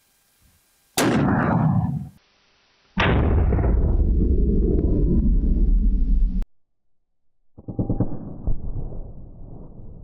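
A single .50 BMG rifle shot about a second in, a sharp crack that rolls off over about a second. About three seconds in comes a second, longer and deeper boom that runs for about three seconds and cuts off suddenly. After a short silence a low rumbling noise starts.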